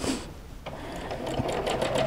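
Home sewing machine free-motion quilting through a quilt sandwich. About half a second in it starts stitching: a fast, even run of needle strokes over a low motor hum, growing louder as it goes.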